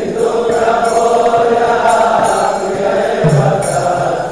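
Devotional kirtan: voices chanting a mantra to music, with steady metallic percussion strokes keeping time.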